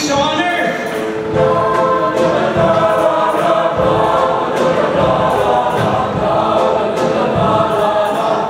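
A mixed show choir singing together in held chords over accompaniment with a steady beat.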